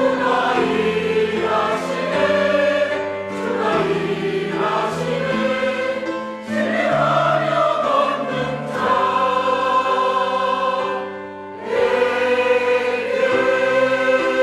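Mixed choir of men's and women's voices singing a Korean sacred anthem in sustained chords, with two short breaks between phrases before each new phrase swells in again.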